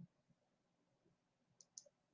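Near silence: faint room tone, with two brief, faint clicks near the end.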